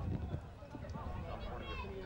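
Faint voices calling out on and around the football pitch, over a steady low outdoor rumble.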